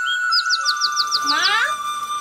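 Bird-like chirping sound effect, a run of quick, high downward chirps, then a cluster of tones sliding steeply down in pitch about one and a half seconds in, over a steady high tone.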